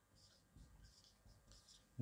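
Faint scratching of a marker pen writing on a whiteboard, a run of short, light strokes against near silence.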